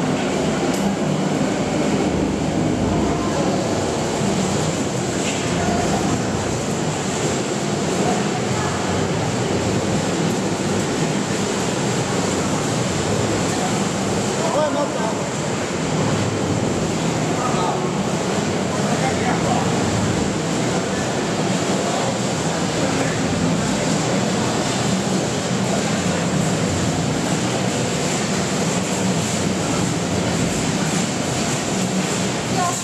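Machinery of a corn-curl puffed-snack production line running: a steady, dense mechanical din from the conveyors and multi-layer belt oven, with a thin steady high whine over it.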